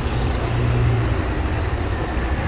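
Steady low rumble with a hum, a vehicle engine running nearby; the hum is strongest in the first second.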